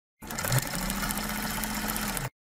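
A small machine running with a steady hum and a fast, even clatter. It starts suddenly and cuts off abruptly at the end.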